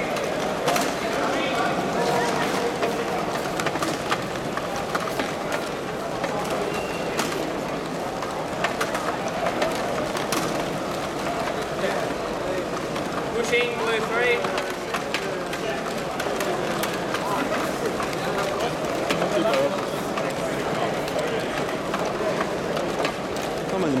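Indistinct voices of several people talking at once in a large hall, with scattered small clicks and knocks.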